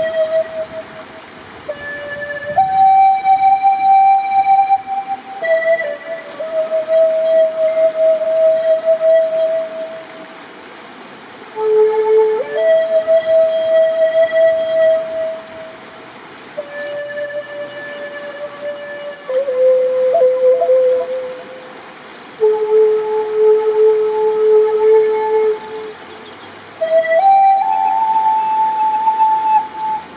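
Native American-style wooden flute playing a slow melody of long held notes that step up and down in pitch, in phrases with short breaks for breath between them.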